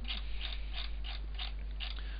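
Computer mouse scroll wheel turned in a run of ratchet-like clicks, about four or five a second, over a steady low mains hum.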